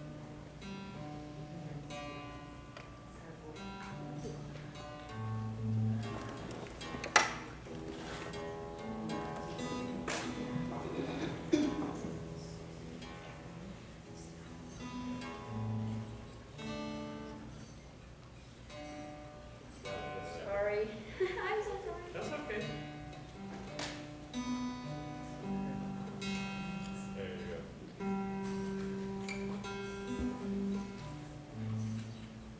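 Acoustic guitar being tuned: single strings and notes are plucked and left ringing, one after another, while the tuning pegs are turned. One sharp click about seven seconds in.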